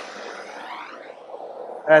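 Handheld gas torch burning with a steady hiss, its flame passed over freshly poured epoxy to pop the surface bubbles.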